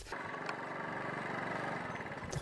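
Small step-through motorbike engine running steadily, a fairly faint, even putter.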